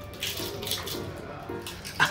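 Crunching as crispy fried food is bitten and chewed, several short crackly crunches over background music.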